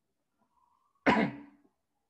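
A single cough about a second in, sudden and loud, dying away within half a second.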